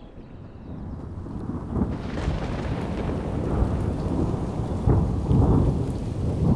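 Thunder rumbling over steady rain. The sound builds up over the first two seconds and swells again near the end.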